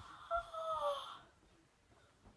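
A person's voice: one drawn-out wordless cry, a little falling in pitch, lasting under a second, just after landing on the couch cushions.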